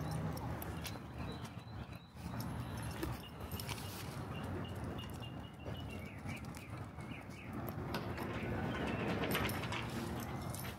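Footsteps on a concrete sidewalk, with irregular light steps over steady outdoor background noise.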